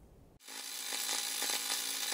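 A steady hissing, sizzling sound effect that fades in about half a second in and then holds steady.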